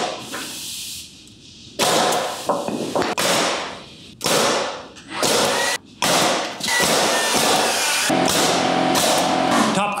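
Pneumatic framing nailer on an air hose firing repeatedly, driving nails through short two-by-four cripple blocks into a wooden header, the shots closer together in the second half.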